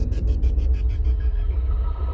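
Logo-intro sound effects: a deep, steady rumble under a fast run of glitchy ticks, about seven a second, that fade out after about a second and a half.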